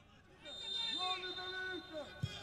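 A faint, distant voice calling out on one long held note for about a second and a half, starting about half a second in: a shout from the pitch picked up by the match microphones.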